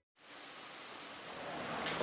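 Steady, even background hiss of room ambience in a small restaurant shop, growing slightly louder toward the end.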